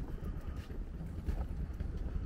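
Wind buffeting the microphone in a low, uneven rumble, with a few soft footsteps on a wooden boardwalk.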